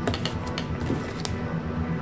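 Handling noise from a pair of rubber-soled sneakers being held and turned over: a few light clicks and taps, the clearest near the start and one just past the middle. Soft background music runs underneath.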